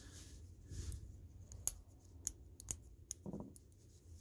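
A small carabiner and screwdriver being handled, with four or five sharp little metal clicks about half a second apart.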